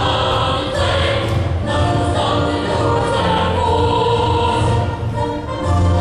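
A children's choir singing with musical accompaniment, with sustained low bass notes underneath.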